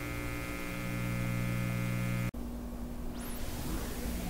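A held organ chord rings on over a steady hum and is cut off abruptly a little over two seconds in. Electrical hum and hiss follow, with a brief faint high rising squeal, in the gap between two garage-rock album tracks.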